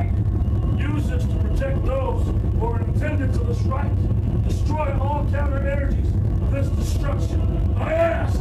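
Indistinct voices talking throughout, over a steady low rumble.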